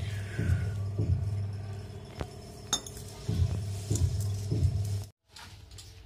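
Hands mixing flour and water and kneading dough in a steel plate: soft pressing thuds about twice a second, with bangles clinking and a few sharp metallic clinks. The sound drops out briefly about five seconds in.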